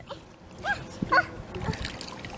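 A baby making two short, high-pitched squeals about half a second apart.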